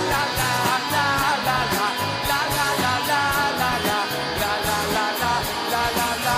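Rock band playing live: electric guitars over bass and drums, with a steady driving cymbal beat.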